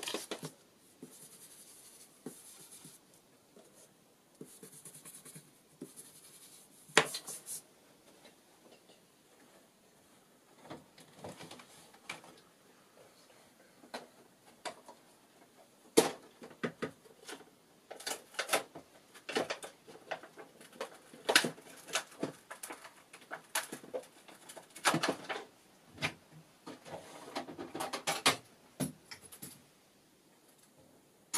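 Paper and craft tools being handled on a tabletop: scattered taps, clicks and rustles. There is a sharp knock about seven seconds in, and the handling grows busier from about halfway, with many quick clicks and knocks.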